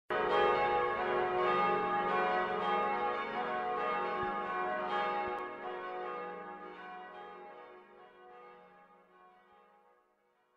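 Bells ringing, several strikes overlapping with long ringing tones, dying away over the last few seconds.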